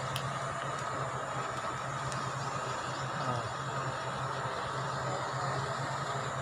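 A four-wheel-drive jeep's engine idling, a steady low hum with a faint hiss over it.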